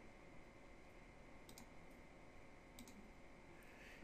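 Near silence with faint computer mouse clicks: a quick pair of clicks about a second and a half in, and another pair about a second later.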